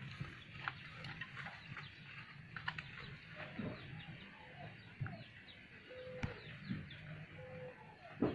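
Farmyard poultry: scattered short chirps and clucks, including two brief held calls near the end. Light knocks and rustles of handled grass come between them.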